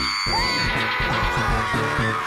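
A long, loud yell, a battle cry from two cartoon characters leaping to attack, held at one pitch over music.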